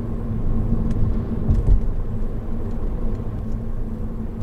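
Steady engine and road rumble inside the cabin of a Honda Odyssey RB3 minivan with a 2.4-litre four-cylinder engine, driving along at moderate speed, with a brief low thump about one and a half seconds in.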